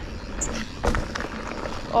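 Mountain bike rolling along a dirt forest track: steady tyre and riding noise, with a few sharp clicks and rattles from the bike about halfway through.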